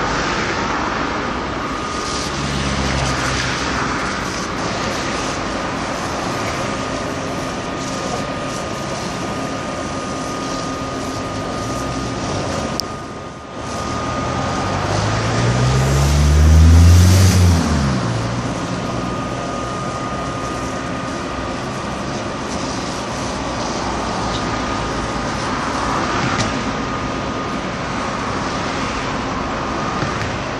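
Road traffic close by: a steady rush of passing vehicles over a constant faint high tone, with one vehicle passing loudly about two-thirds of the way through, its engine pitch rising and then falling as it goes by.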